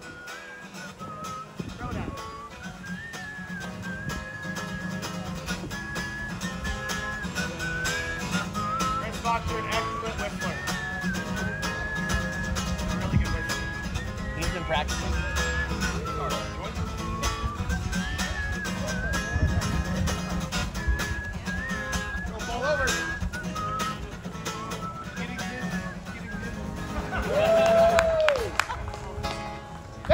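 Acoustic guitar strummed steadily in a live solo performance, with a thin whistled melody wavering above the chords. A louder voice comes in briefly near the end.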